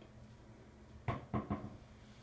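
Three quick knocks about a quarter second apart, over a low steady room hum.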